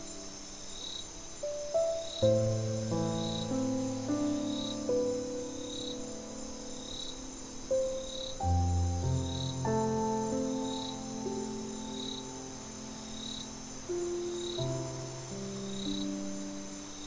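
Slow, calm solo piano chords over a chorus of crickets: a steady high trill with a short chirp repeating about once a second.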